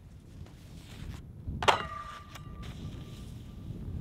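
A snowboard strikes a metal snowpark rail about halfway in with a sharp clank that rings on for over a second, over a low steady rumble.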